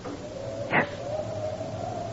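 Radio-drama sound effect for the 'talking tree': a thin, sustained musical tone, like music on the wind, that wavers and drifts slightly up in pitch. A short spoken 'Yes' cuts in a little before one second.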